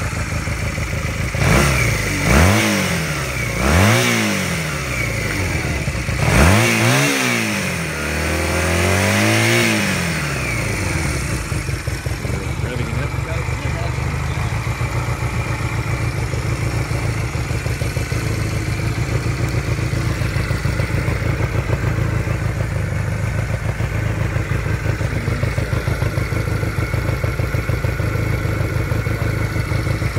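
1982 Honda CM250C's air-cooled parallel-twin engine blipped four times in the first ten seconds, each rev rising and falling back, then idling steadily for the rest of the time.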